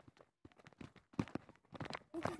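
A few soft footsteps while walking, heard as separate short knocks with near silence between them.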